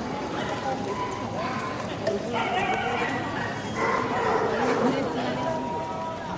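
Dogs barking amid a babble of people's voices at a dog show, the chatter and barks growing louder about two seconds in.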